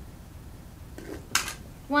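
A coin dropped through the slot of a lidded jar bank, one sharp clink about a second and a half in.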